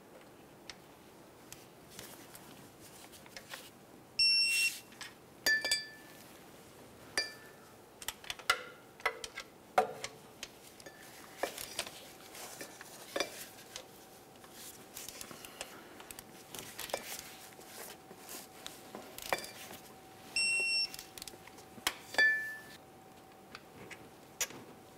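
Digital click-type torque wrench ratcheting on the starter mounting bolts, with short electronic beeps about four seconds in and again about twenty seconds in: the signal that each bolt has reached the set torque of 30 ft-lb. Light metallic clicks and clinks of the ratchet and socket run between the beeps.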